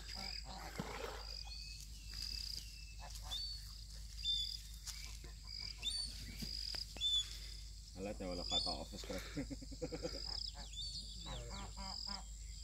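Birds calling outdoors: short, high whistled notes, some sliding in pitch, repeated every second or so over a quiet background with a steady thin high tone.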